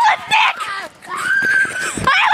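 A child laughing hard in short, high-pitched, wavering bursts, then a long held squeal in the second half.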